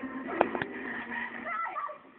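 A woman cries out in pain, "¡Ay!", with two sharp clicks close together about half a second in.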